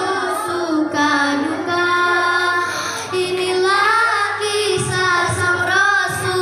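A girl singing into a microphone over a loudspeaker: a slow melodic line with long held notes that slide up and down.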